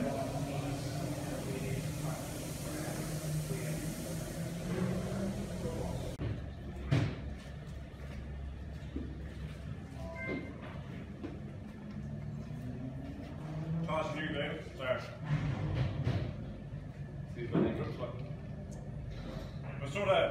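Garage ambience: indistinct voices over a steady low rumble, with a single sharp knock about a third of the way through.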